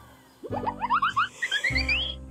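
Cartoon-style comedy sound effect: a quick run of short blips stepping steadily higher in pitch for about a second and a half, over low bass notes that come in about half a second in and again near the end.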